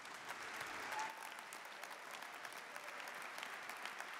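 Audience applauding steadily with many hands clapping.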